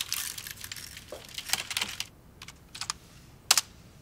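Typing on a computer keyboard: a quick run of keystrokes for about two seconds, then a few separate key presses, the loudest near the end.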